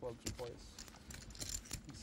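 Poker chips clicking against one another at the table: a quick, irregular run of faint light clicks, thickest in the second half.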